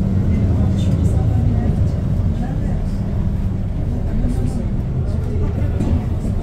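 Steady low drone of a city-tour bus's engine and running gear, heard from inside the cabin as it drives through town, with faint indistinct voices over it.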